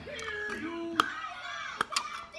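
Small pieces of ice crunching between the teeth, with a few sharp cracks about a second in and near the end. Wordless vocal sounds run alongside.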